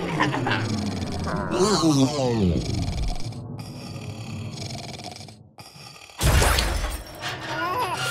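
Cartoon soundtrack: wordless character vocal sounds whose pitch slides downward in the first few seconds, then a sudden loud crash sound effect about six seconds in, lasting under a second, followed by more vocal sounds near the end.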